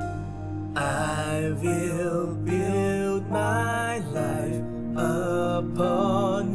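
Worship song: held keyboard chords, then a solo singer comes in about a second in, singing a slow melody with vibrato over the accompaniment.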